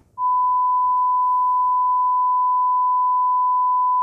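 A loud, steady electronic beep tone at one unchanging pitch, like a broadcast test tone, starting a moment in. It serves as a mock 'signal lost' tone for a pretend power cut.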